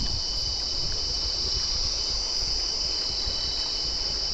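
A chorus of insects buzzing in one steady, high-pitched, unbroken drone.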